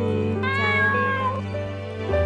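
A cat meows once, a drawn-out call lasting about a second, over soft background music.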